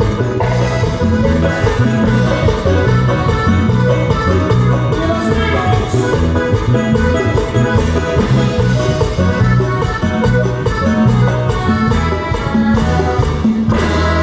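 Live dance band playing an upbeat regional dance tune: bright keyboard melody over a steady bass line and drums, settling onto a held chord near the end.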